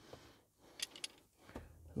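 Quiet pause with two faint clicks close together a little under a second in.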